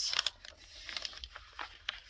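A sheet of paper being handled and folded: a louder rustle right at the start, then soft rustling with a few short, crisp ticks.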